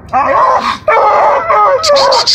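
Coonhounds baying at a tree, two drawn-out bawls one after the other: the treeing call that tells their quarry is up the tree.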